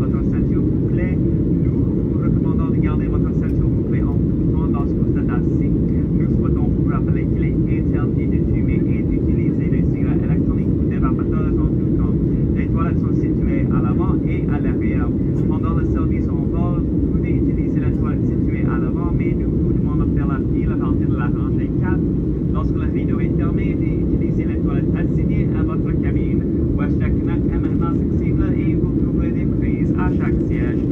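Steady cabin noise of a Boeing 737 airliner in flight: a constant low rumble of the engines and rushing air heard from inside the cabin, with faint passenger chatter underneath.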